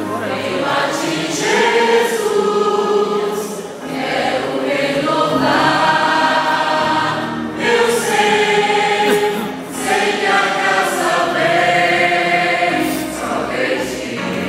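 Large mixed church choir singing a gospel hymn together in long held phrases, with brief breaths between phrases about 4, 7.5 and 10 seconds in.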